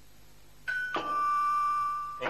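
Two-tone doorbell chime. About two-thirds of a second in, a short high note drops to a lower note that is held for over a second.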